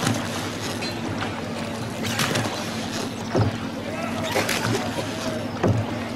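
Sounds of riding in a river boat: a steady low hum with short knocks every second or so, and voices murmuring in the background.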